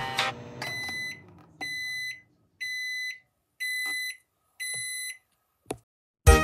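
Microwave oven's end-of-cycle alert: five high beeps, about one a second, each lasting just over half a second, signalling that the heating is done. A short click follows near the end.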